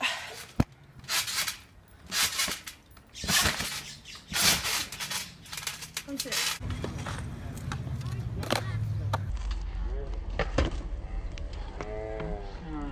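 Someone jumping on a backyard trampoline: a rhythmic swish and creak of the springs and mat about once a second. After about six and a half seconds this gives way to a steady low rumble.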